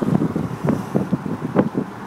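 Road and wind noise inside the cab of a moving GMC Sierra pickup: a low, uneven rumble.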